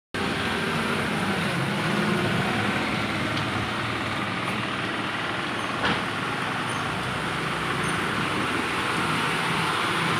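Road traffic passing on a wet road in the rain: a steady hiss of tyres and rain with motorcycle and truck engines going by, and one sharp click about six seconds in.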